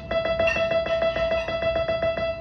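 Piano repeating a single high note rapidly, about seven or eight strikes a second, each note ringing briefly.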